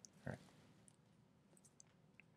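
Near silence: room tone, with one brief low sound about a third of a second in and a few faint clicks after it.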